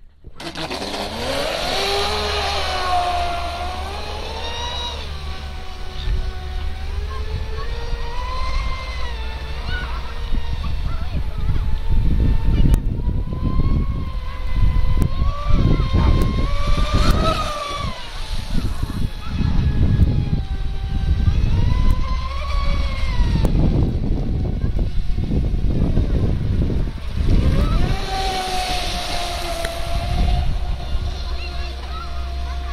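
Brushless electric motor of a TFL Pursuit radio-controlled racing boat on 6S power, whining loudly as the boat speeds across the water, its pitch rising and falling again and again with the throttle.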